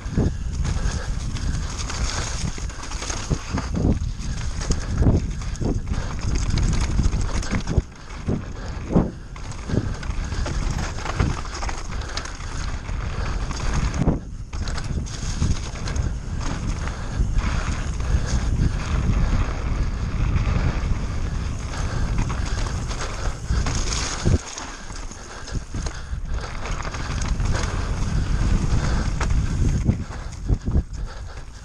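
A Giant Reign full-suspension mountain bike descending a wet, muddy dirt trail: tyres rolling and skidding over dirt and mud, with the frame and drivetrain rattling and frequent short knocks as the bike hits bumps. A constant low rumble of wind buffets the camera's microphone.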